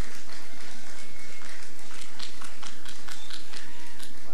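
Audience clapping, many irregular claps scattered through the pause.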